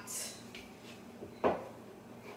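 A single sharp knock about one and a half seconds in: a wooden rolling pin set down on the work surface to start rolling out dough, over faint room noise.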